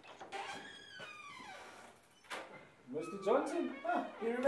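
A door opening with a single latch click, then a man's voice greeting without clear words.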